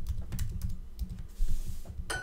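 Typing on a computer keyboard: a quick run of keystroke clicks, then a short hiss about one and a half seconds in.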